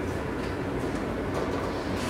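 Steady low hum and rumble of background noise, unchanging throughout.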